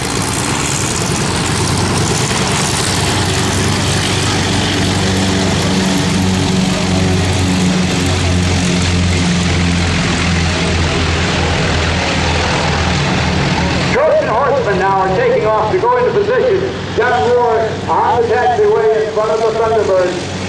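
North American T-28 Trojans' radial engines at takeoff power as a formation takes off, mixed with a Stearman biplane's radial engine taxiing close by. About fourteen seconds in the loud propeller noise drops away suddenly, leaving a lower engine drone with voices over it.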